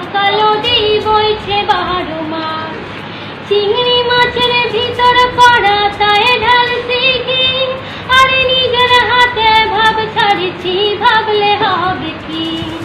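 A young girl singing solo in a clear voice, holding long notes, with a short break between phrases about three seconds in.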